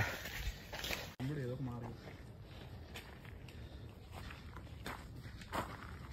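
Footsteps crunching on a gravelly dirt trail, faint and uneven, with a short voice just after a cut about a second in.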